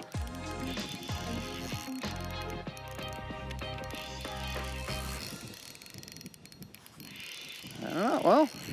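Spinning reel being cranked with a fish on the line, its gears giving a steady whir that stops about five seconds in.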